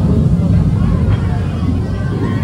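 Indistinct chatter of a crowded restaurant dining room over a loud, steady low rumble.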